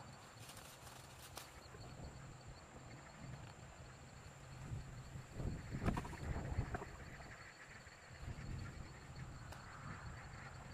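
Butternut squash vine leaves rustling, with a cluster of knocks and rustles about five to seven seconds in as a squash is worked loose from the trellised vine; a few light clicks come about a second in.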